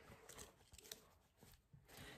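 Near silence, with faint rustling of denim jeans being handled.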